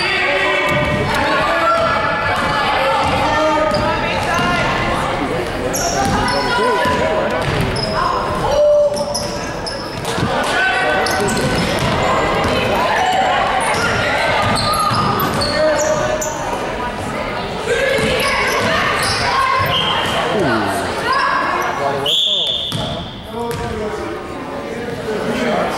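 Basketball dribbled and bouncing on a hardwood gym floor during live play, with short sneaker squeaks and spectators talking and calling out, all echoing in a large gym.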